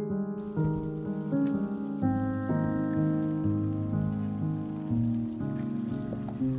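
Diced vegetables sizzling in oil and butter in a pot on the hob: a steady hiss that starts just after the beginning. Background music plays throughout.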